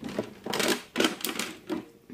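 Hard plastic toys clattering and knocking together as they are handled and wiped, in a quick irregular run of clicks and knocks.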